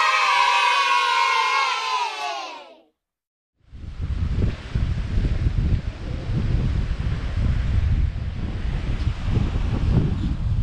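A crowd of voices cheering, the pitch sliding down as it fades out about three seconds in. After a brief gap, wind buffets the microphone in a steady low rumble over the sea surf.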